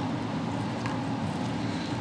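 Steady low background hum, with one faint click a little under a second in.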